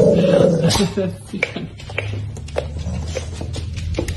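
Dog growling with a rubber tug toy in its mouth: a loud, rough growl in the first second, then scattered light clicks and taps.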